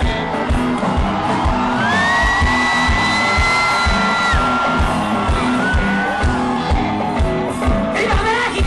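Live rock music from a band playing with a symphony orchestra: a steady drumbeat, and a long high note that slides up about two seconds in and is held for over two seconds.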